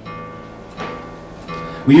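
Acoustic-electric guitar being tuned: a string rings on, and another note is plucked a little under a second in and left to sustain.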